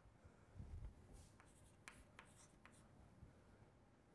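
Faint chalk on a blackboard: a few short taps and scratches as characters are written, between about one and three seconds in. A soft low thump comes just before, under a second in.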